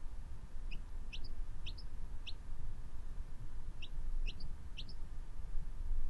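Quail chick peeping: short rising peeps, four in quick succession, then a pause and three more.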